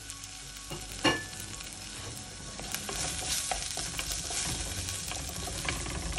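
Chopped onions and green chillies sizzling in oil in a pot while a wooden spoon stirs and scrapes them around, with small clicks throughout and one sharp knock about a second in.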